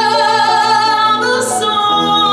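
A woman singing a long held note with vibrato, backed by piano and upright bass; a new word begins about one and a half seconds in.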